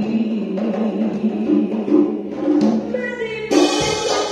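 Live band music on keyboard and drums, with pitched notes over a steady rhythm; about three and a half seconds in, the band comes in fuller and brighter, with drum hits.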